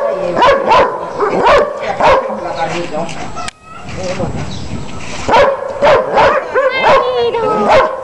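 A medium-sized mixed-breed dog barking repeatedly in short barks, roughly two a second. There is a sudden brief break about three and a half seconds in.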